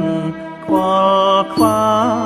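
Khmer song: a voice singing long held notes over instrumental accompaniment, dipping briefly about half a second in before the next phrase.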